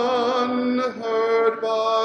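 A man singing a slow hymn unaccompanied into a microphone, holding one long note and then moving to the next about a second in.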